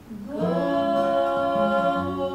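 Several voices singing wordless, sustained notes in harmony. They slide up into the notes about a quarter second in and then hold them steady.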